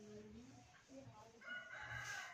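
Faint rubbing of a duster wiping a whiteboard. About one and a half seconds in, a faint, drawn-out high call starts in the background.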